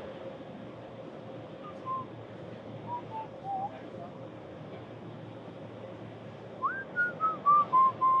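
A person whistling a short tune: a few scattered notes, then near the end a quick upward note followed by a run of descending notes, the loudest part. A steady background hum runs underneath.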